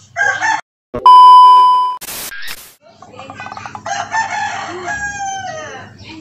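A loud, steady electronic beep lasting about a second, then two quick whooshes, then a rooster crowing, the long call ending in a falling tail.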